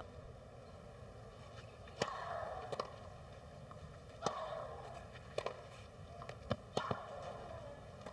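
A tennis ball bouncing on a clay court several times between points, as sparse sharp knocks over faint crowd murmur.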